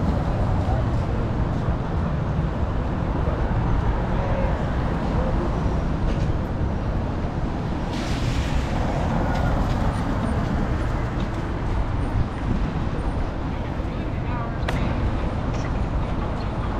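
City street ambience: a steady rumble of traffic, with voices of passers-by and a passing vehicle's hiss about halfway through.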